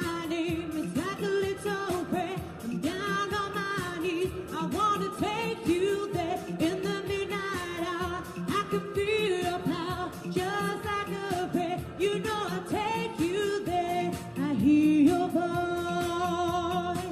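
A woman singing a pop song into a handheld microphone over instrumental accompaniment, with many long held notes.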